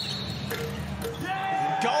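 Basketball court sounds over a steady crowd murmur: a few sharp knocks of the ball, then a held squeak with overtones near the end.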